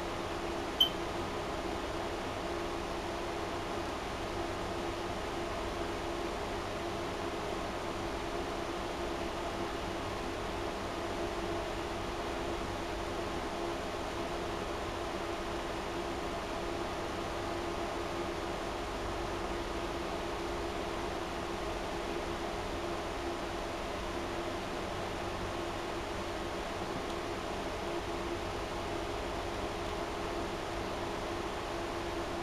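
Steady hum of a running fan, with one short click about a second in.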